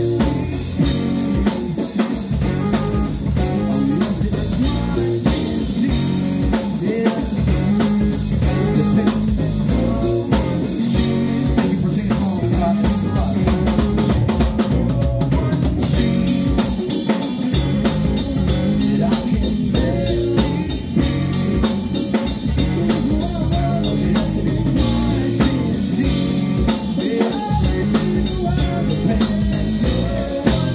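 Live funk band playing a song: drum kit keeping a steady beat under bass, electric guitar and keyboard.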